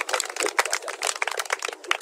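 A small group of people clapping, a dense patter of hand claps that dies away near the end.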